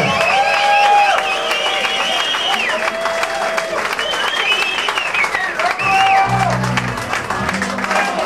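A live band with electric guitars playing long held notes that glide in pitch, with low bass notes coming in near the end, while the audience claps throughout.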